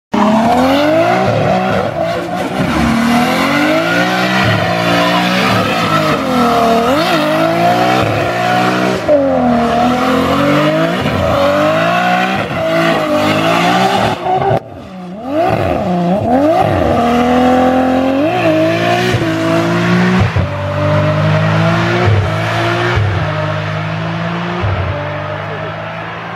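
Nissan Cefiro's RB25DET turbocharged straight-six revving hard in fourth gear during a drift and burnout, the revs repeatedly dipping and rising as the clutch is kicked, with tyres squealing. About halfway through the engine drops away for a moment, then picks straight back up. The sound fades near the end.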